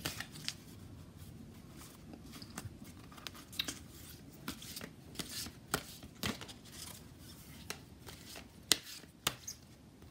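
A deck of oracle cards being shuffled by hand, packets of cards dropped from one hand onto the pack in the other: soft, irregular flicks and clicks of card on card, with a few sharper snaps.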